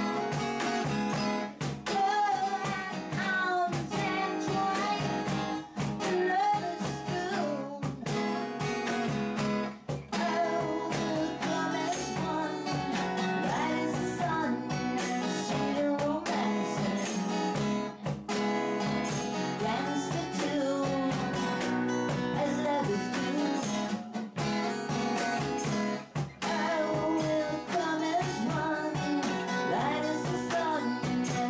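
A woman singing a song to a strummed acoustic guitar, played live.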